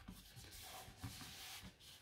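Faint rubbing of hands pressing and smoothing a freshly glued card-stock layer flat onto a card base, with a slight knock about a second in.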